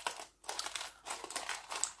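Aluminium foil crinkling in irregular small crackles as foil-wrapped pieces of bakhoor incense are handled in a tin.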